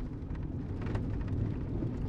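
Low, steady rumble of a car's interior with faint scattered ticks, the speech-free pause of a phone call in a back seat.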